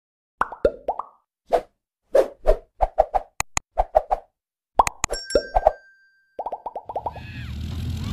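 Animated-intro sound effects: a string of short pops and plops, then a sharp click with a ringing ding about five seconds in, and a quick run of pops. A steady low rumble starts near the end.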